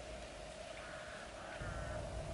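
Quiet outdoor background with a faint steady hum, and a faint distant call about a second in.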